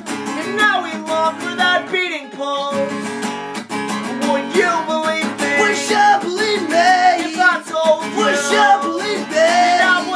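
Acoustic guitar strummed as accompaniment while two men sing together.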